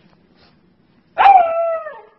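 A beagle puppy gives one long, drawn-out bark, starting about a second in and sliding slightly down in pitch, lasting just under a second.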